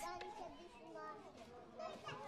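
Faint chatter of young children's voices as they play.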